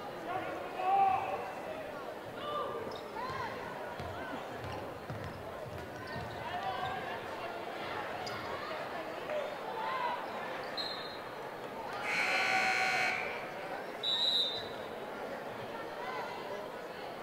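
Basketball game sounds in a gym: the ball dribbling, sneakers squeaking on the hardwood and chatter. About eleven seconds in a whistle sounds briefly, then a scoreboard horn is held for over a second, and a second short whistle follows.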